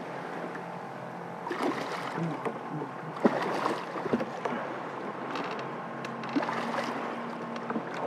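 A big hooked snook thrashing at the surface beside a small skiff: irregular splashes of water over a steady wash of wind and water noise.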